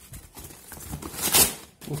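Cardboard shipping box being torn open and rustled by hand, with a louder rip about one and a half seconds in.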